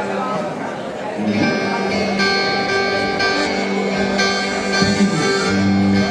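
A live band playing, led by accordion with guitar, on long held notes that fill out about a second in, with people talking underneath.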